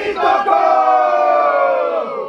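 A group of voices giving one long shout together, held for about two seconds and falling slightly in pitch as it fades.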